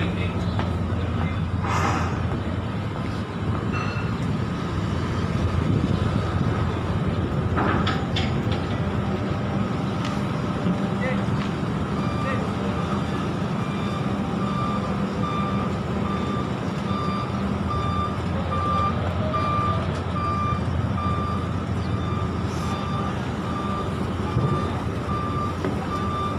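A vehicle's reversing alarm beeping at an even pace, starting about twelve seconds in, over a steady low engine hum.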